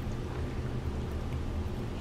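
Boiling hot water poured in a thin, steady stream into a glass mug over a herbal tea bag.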